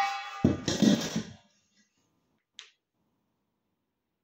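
A metal pan knocked hard against a man's head, ringing. A second, heavier knock about half a second in rings on and dies away by about a second and a half. A faint click follows a second later.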